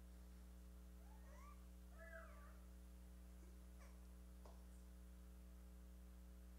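Near silence: a steady low electrical hum, which the listener takes for the hum of the lights. About a second in, a faint high-pitched child's voice in the background glides up and down for a second or so, and a couple of fainter short squeaks follow near four seconds in.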